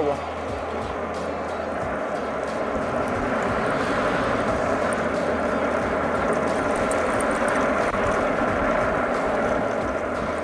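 Wind rushing over the camera's microphone and tyre noise from a riding electric scooter. The noise grows louder over the first few seconds as the scooter picks up speed, then holds steady.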